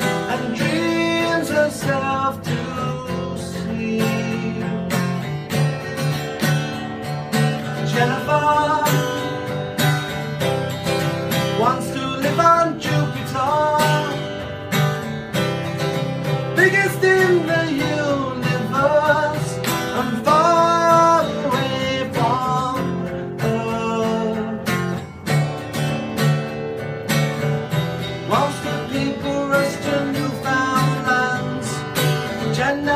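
A man singing a song while strumming an acoustic guitar, steady chords under a sustained, wavering vocal line.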